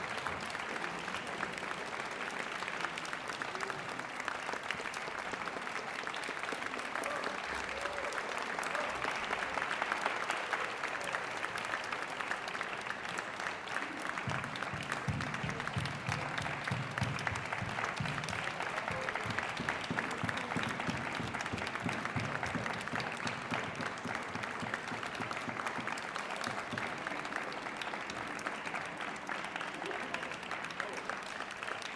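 Audience applauding steadily: many hands clapping at the close of an orchestral performance.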